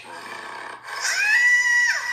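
A person's voice gives a high-pitched shriek about a second in: the pitch rises, is held for about a second, then falls away.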